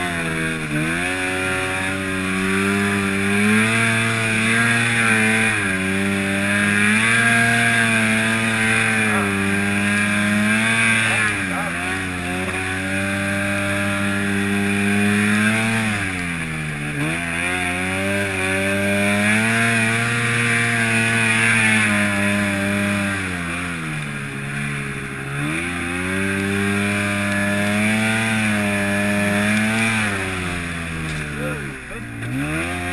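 Arctic Cat 700 snowmobile's two-stroke engine running hard through deep powder. Its pitch sags and climbs back several times as the throttle eases and opens again.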